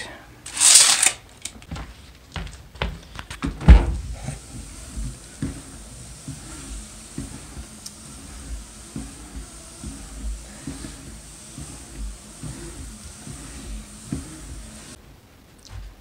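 Handling noise from a camera being moved about by hand: a short rasp about half a second in, a sharp knock a little under four seconds in, then soft low thumps and rustling.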